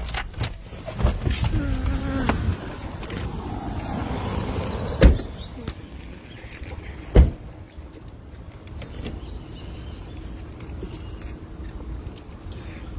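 Two car doors shut with loud thumps about five and seven seconds in, after a couple of seconds of clicks and rustling as people climb out of the car. A steady low background hum runs under it.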